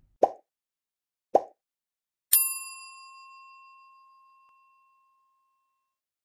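Sound effects of an animated subscribe-button end card: two short pops about a second apart, then a single bright bell ding about two seconds in that rings out and fades over two to three seconds.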